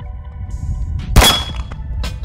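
A single shot from a CZ P-10 C pistol a little past a second in, followed at once by a brief high metallic ring from a struck steel target.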